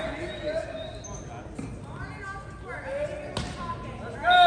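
Players' voices echoing in a gymnasium, with one sharp smack of a volleyball about three and a half seconds in.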